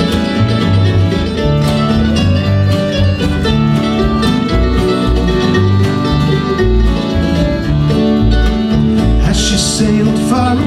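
Acoustic band playing an instrumental break between verses of a slow folk song: mandolin, strummed acoustic guitar, piano accordion and plucked upright double bass together.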